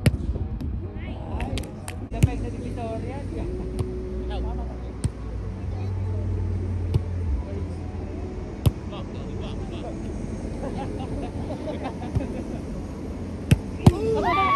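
Volleyball being played on grass: sharp slaps of hands and forearms on the ball, about six hits spread over the rally, two of them close together near the end. Faint players' voices and a low rumble run under it for several seconds in the middle.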